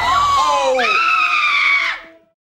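Loud human screaming: high voices gliding down in pitch, then one long high scream from about a second in that cuts off abruptly at the end.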